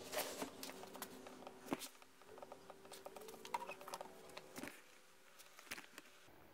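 Faint, irregular light clicks and taps from handling a small outboard motor as it is rotated and tilted on its bench stand, over a faint steady hum.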